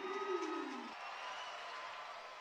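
Ice hockey arena crowd noise, a low murmur with a falling groan-like sound in the first second, then settling to a steady hum.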